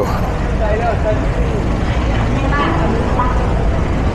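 Busy city street traffic, cars and motorbikes running past, over a steady low rumble, with brief snatches of people talking nearby.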